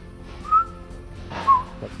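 Three short whistled notes, each with a slight bend in pitch, about a second apart, over faint background music.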